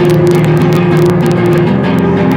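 Loud live sludge-metal band playing: guitar and bass sustain a chord that changes near the end, with short high crashes over it.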